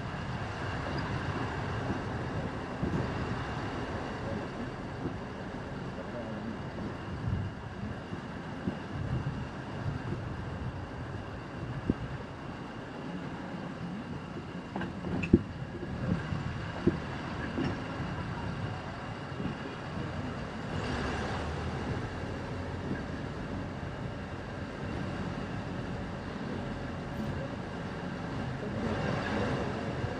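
Car driving along a city street: steady engine and road rumble, with a couple of short sharp knocks about halfway through.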